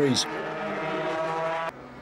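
A 125cc two-stroke Grand Prix racing motorcycle engine running at high revs, holding one steady note. It cuts off suddenly near the end.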